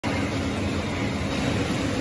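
Steady mechanical hum and hiss of a meat-processing cutting room's machinery, such as conveyor belts and ventilation, running without change.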